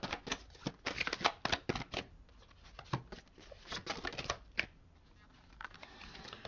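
Tarot cards being shuffled by hand: a quick run of crisp card clicks for about two seconds, then a few scattered flicks that stop about four and a half seconds in.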